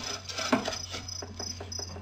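Short high-pitched chirps repeating about six times a second, over irregular soft clicks and a low steady hum.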